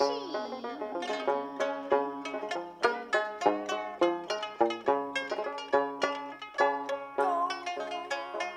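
Sanxian and pipa plucked together in a brisk instrumental passage of a Suzhou pingtan ballad: a dense run of quick plucked notes, some of them sliding in pitch.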